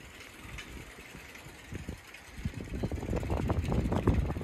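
Low rumble and buffeting while riding a bicycle, with wind on the microphone, turning louder and gustier a little past halfway.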